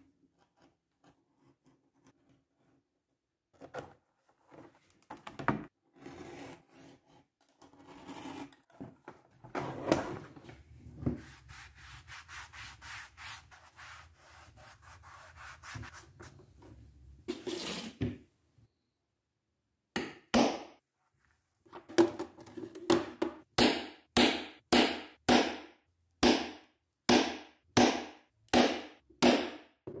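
Leather being worked by hand on a wooden bench: scattered scraping and rubbing, then, for the last several seconds, a steady run of back-and-forth rubbing strokes about two a second.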